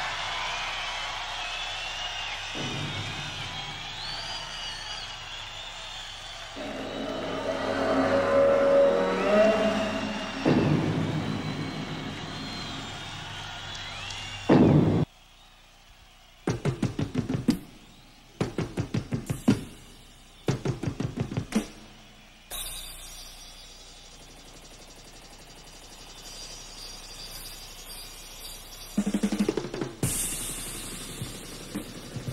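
Live hard rock band: wavering, gliding guitar tones and a rising swell, then a loud crash that cuts off suddenly, followed by several short bursts of heavy, rapid drum strikes with pauses between, standing for the approaching giant footsteps just described. Drums come back in near the end.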